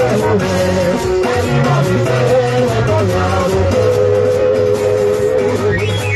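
Live band music played loud: electric guitar over a bass line and a steady percussion beat.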